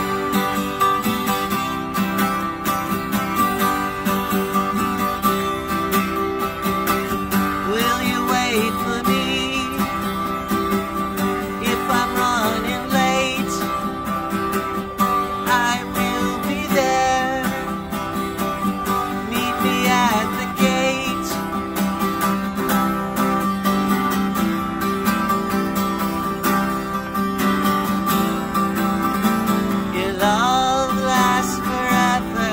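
Twelve-string acoustic guitar strummed steadily, playing the chord intro of a song before the vocals come in.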